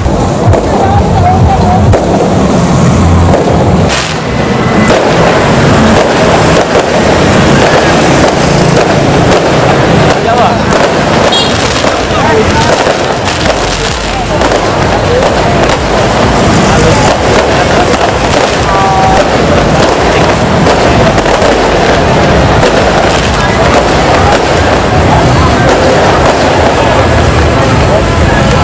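Aerial fireworks going off overhead in a dense, continuous run of crackling bursts, with one sharp bang about four seconds in.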